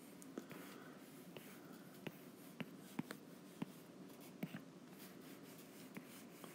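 Faint, irregular soft taps and light strokes on a tablet's glass touchscreen while drawing, over low room hiss.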